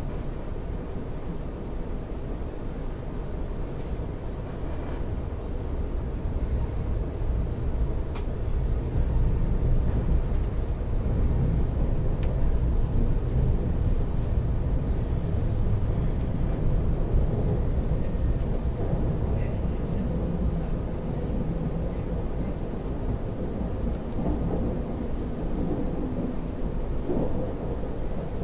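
Running noise heard inside a moving passenger train carriage: a steady low rumble of the wheels on the track. It grows louder about a third of the way in and eases slightly toward the end.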